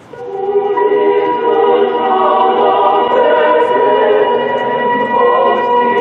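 A choir singing a hymn in long held chords, swelling in over the first second and then holding steady.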